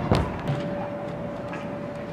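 Pro scooter's wheels rolling down a mega ramp roll-in, with a sharp clack just as the rider drops in and a smaller knock about half a second later, over a faint steady tone.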